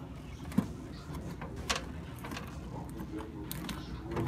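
Fingers prodding and lifting a dehydrated zucchini slice on a dehydrator sheet: a few short, sharp clicks and light handling noises, the strongest about half a second in, over a steady low hum. The slice is still soft and chewy, not crisp.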